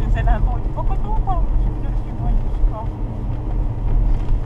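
Steady low rumble of a car's engine and road noise, heard from inside the moving cabin.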